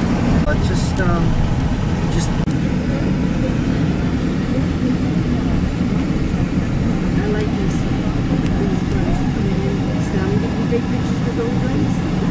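Steady road and engine noise heard from inside a moving car's cabin, with faint voices in the background.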